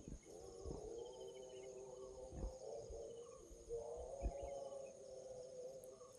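Faint, steady chirring of insects, with a faint wavering pitched sound from further off and a few soft low thumps.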